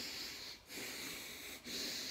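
A man breathing deeply and audibly through the mouth in a steady rhythm, full inhales and exhales following one another about once a second with a brief pause between. The breath is paced to his paddle strokes as he paddles prone on a surfboard.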